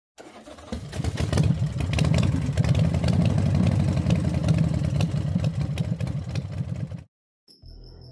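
Motorcycle engine starting up and running with a fast, pulsing beat, then cutting off abruptly about seven seconds in.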